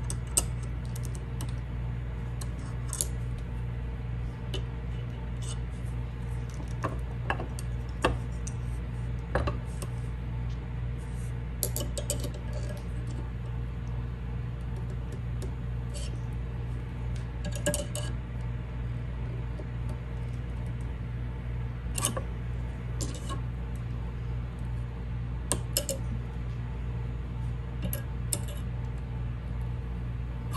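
Light, scattered metal clicks and clinks of silver fork tines being bent and adjusted with a hand tool, at irregular intervals over a steady low hum.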